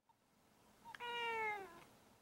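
A domestic cat meowing once, about a second in, with the call falling in pitch as it ends. A faint click comes just before it.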